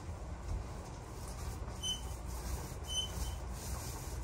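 Paint roller on an extension pole being worked over a wall: a faint rolling rub with a few short, high squeaks about a second apart in the second half.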